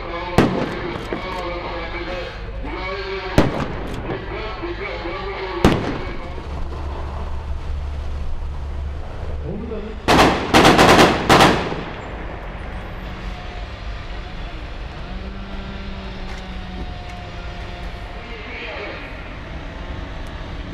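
Sharp bangs in a staged security-force exercise: single bangs a few seconds apart over shouting voices and a running vehicle engine, then a quick cluster of several loud bangs about ten seconds in.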